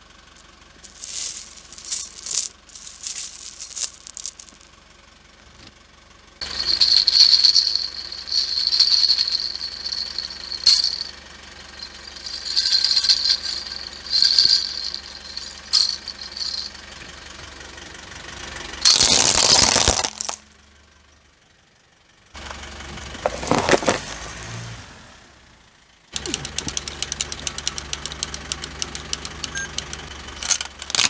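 Crushed plastic beads clattering as fingers pick at them, then plastic baby rattles shaken with their beads rattling and a high jingle. There are two loud crunching bursts as a car tyre rolls over them, and near the end a wind-up toy's clockwork ticks rapidly and evenly.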